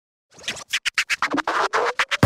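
Turntable record-scratching in intro music: a rapid run of short scratches, about seven a second, that merges into a longer scratch near the end.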